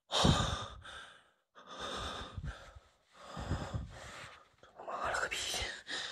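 A man breathing heavily close to the microphone, about four long, noisy breaths with short pauses between them.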